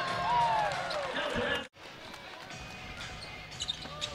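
Basketball shoes squeaking on a hardwood court, a few short gliding squeaks over arena noise, cut off abruptly partway through. Then quieter gym ambience with a basketball being dribbled.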